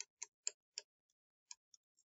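Faint, light clicks of a stylus tip tapping a pen tablet while handwriting: four quick ticks in the first second, then one or two more.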